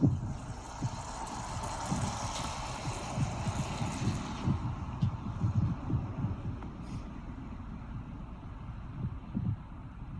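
Wind buffeting an outdoor microphone in irregular low thumps. A swell of rushing noise rises and fades over the first four seconds or so.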